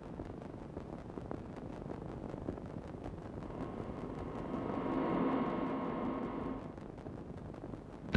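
A car's engine approaching and pulling in, growing louder from about three and a half seconds in, then fading away by about seven seconds, over a steady low hiss.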